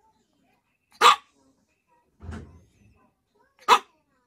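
Yorkshire terrier giving two short, sharp barks, one about a second in and one near the end, with a softer low sound between them. These are demand barks, the dog urging its owner to come to bed.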